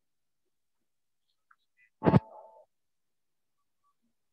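A single sharp knock or thump about two seconds in, followed by a brief steady tone. Otherwise near silence.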